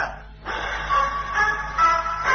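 A short instrumental music cue comes in about half a second in: a few held notes that change pitch in steps, the link music between scenes of a radio sitcom.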